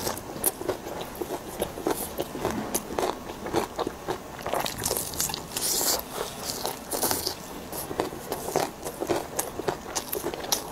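Close-miked biting and chewing of crispy battered fried enoki mushrooms: a run of irregular crunches and crackles, with a louder crunchy bite about six seconds in.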